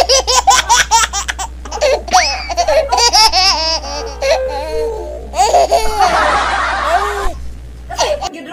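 Loud, hearty laughter in quick repeated bursts, with high-pitched rising and falling stretches and a breathy stretch near the end. A steady low hum sits underneath.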